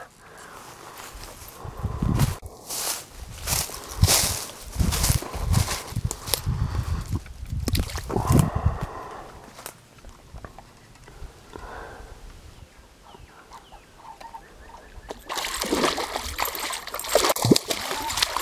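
Footsteps crunching through dry leaves and brush, then from about three seconds before the end a hooked largemouth bass thrashing and splashing at the water's surface.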